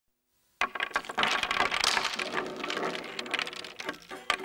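A clatter of many small hard pieces falling and tumbling together, starting suddenly about half a second in and thinning out into separate clicks toward the end.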